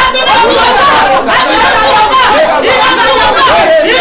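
Several voices praying aloud at once, loud and overlapping, in fervent group prayer.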